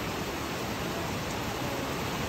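Heavy rain falling, an even, steady hiss with no breaks.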